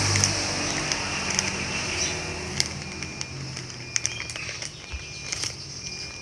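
Plastic flour bag crinkling and rustling in the hands as it is opened and handled, in scattered short crackles over a steady low background hum.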